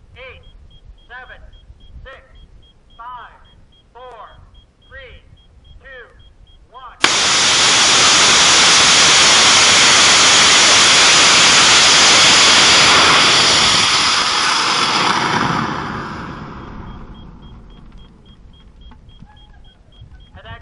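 A voice counting down with one short call about every second, then a rocket motor on a horizontal static-fire test stand ignites abruptly about seven seconds in. It burns loudly and steadily for about six seconds, then tails off and dies away over the next few seconds.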